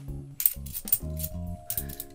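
Cupronickel 50p coins clinking against one another as they are slid off a stack in the hands: a run of quick metallic clinks starting about half a second in, and a few more near the end, over background lounge music.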